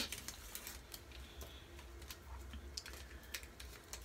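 Faint scattered crinkles and small clicks of a whitening-strip packet being handled and opened by hand.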